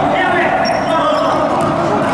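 Futsal ball being kicked and bouncing on a hard indoor court floor, under the voices of players calling out.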